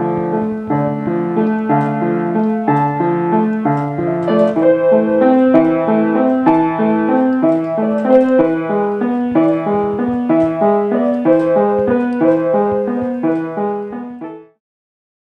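Grand piano being played: a flowing piece of repeated broken chords at an even, unhurried pace.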